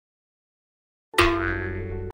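Silence, then about a second in a sudden comedic sound-effect sting: a ringing pitched tone over a low rumble that fades away.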